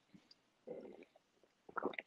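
A faint, soft gulp of beer being swallowed from a glass, about two-thirds of a second in.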